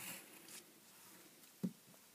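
Faint scratch of a pencil on paper at the start, then a single short, dull knock about one and a half seconds in as the plastic ruler is shifted and set down on the paper.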